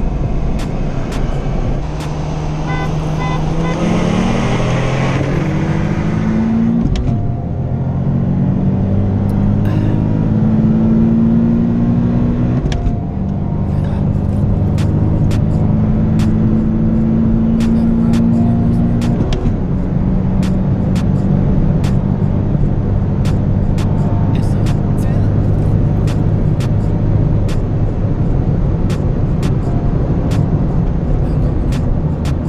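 Car engine at full throttle, heard from inside the cabin while accelerating hard from a roll. Its pitch climbs steadily through the gears, dropping at upshifts about 7, 13 and 19 seconds in, then holds steadier near the end.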